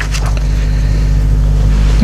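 A steady low hum and rumble, with a paper sheet rustling as it is turned over on the desk.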